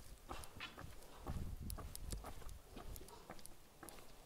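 Footsteps of a walker on a village lane: a run of irregular short clicks and taps, with a low rumble from about a second and a half to two seconds in.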